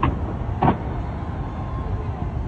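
Distant fireworks display: a continuous low rumble of explosions with two sharper bangs, one at the start and one under a second in.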